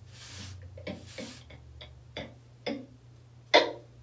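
A woman's breath and mouth sounds without words: a short hissing inhale, a few small clicks, then one brief, loud cough-like burst near the end. A low steady hum runs underneath.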